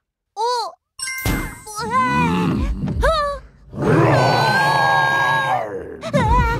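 Cartoon soundtrack: a short character exclamation, a chiming sting with music, a few sliding vocal exclamations, then a long, loud held cartoon dinosaur roar over music.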